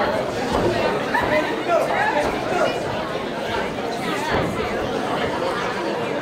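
Spectators in a hall talking and calling out over one another, a steady mix of many voices with no single voice standing out.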